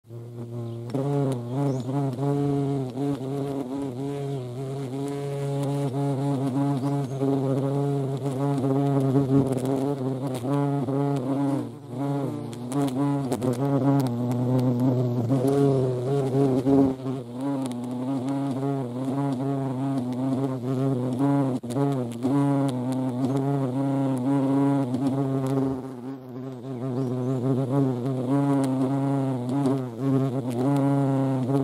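European hornets' wings buzzing loudly in flight right at the microphone, a deep drone whose pitch wavers as the hornets hover, approach and take off. The buzz fades briefly about twelve seconds in and again near the end.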